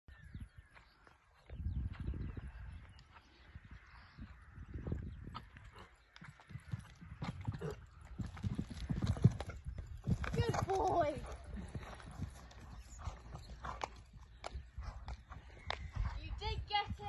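Stallion's hoofbeats on an arena surface, a rhythm of low thuds as he canters, with the heaviest thuds around a fence jumped about eight to nine seconds in. A short voice is heard about ten seconds in.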